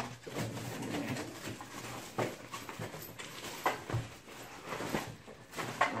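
Rummaging in a nylon tool bag and pulling out a plastic-wrapped power tool: crinkling plastic and a few sharp clicks and knocks. A few short, low hums come in between.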